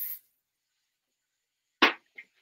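Mostly dead silence, with the sound cut out completely. A high hiss fades out at the very start, and one short sharp sound comes near the end.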